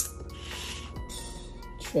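Background music with sustained notes, a short click at the start and two brief hissing noises about half a second and a second in.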